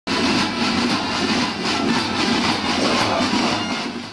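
Traditional drums beating amid the dense noise of a large marching crowd, loud and steady throughout.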